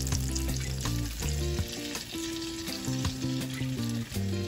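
Sukhiyan fritters deep-frying in hot oil with a steady sizzle, moved about with a metal fork, under background music with a melodic line of held notes.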